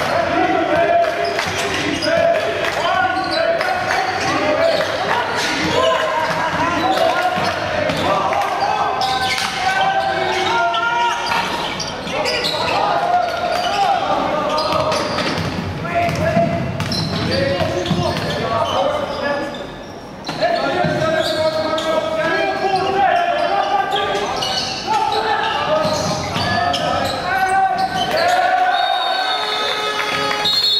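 Basketball being dribbled on a hardwood court, with repeated bounces, amid voices of players and spectators echoing in a large hall.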